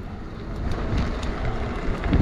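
Steady wind rushing over the microphone with a low road rumble from the fat tyres of an Emmo Oxe fat-tire e-bike rolling over pavement, growing slightly louder as it goes.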